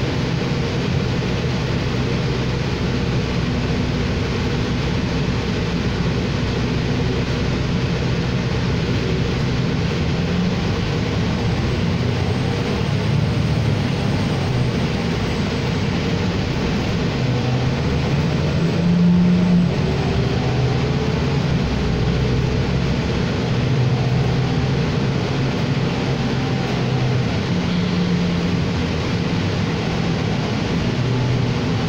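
Cabin noise of a 2018 New Flyer XD40 diesel city bus under way: steady road and engine noise with a low engine drone that shifts in pitch as the bus changes speed, swelling briefly about two-thirds of the way through.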